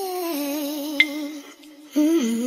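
A woman humming a slow wordless melody with vibrato, as an intro tune; the phrase fades about one and a half seconds in and a new one starts at the end. About a second in, a short sharp click with a brief ring, a subscribe-button click effect.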